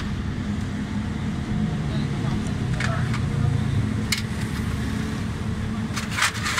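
Steady low drone of motor vehicles running, with two short sharp clicks about three and four seconds in as a screwdriver works at the jets of a stripped-down carburetor.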